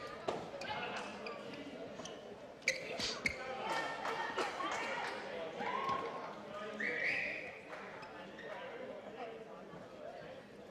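Badminton rally in a large sports hall: a cluster of sharp racket hits on the shuttlecock about three seconds in, and drawn-out squeaks of court shoes on the floor later on.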